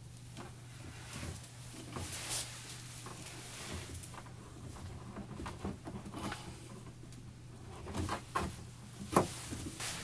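Corrugated plastic drain hose being twisted and pushed onto a sink drain tailpiece by hand: faint, irregular plastic rustling and scraping with small knocks, and a few sharper clicks near the end, over a faint steady hum.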